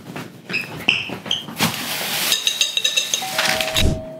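Kitchen clean-up noises: dishes and utensils clinking and knocking, with a short burst of rustling midway. Near the end a two-note falling chime starts and holds, a doorbell ringing.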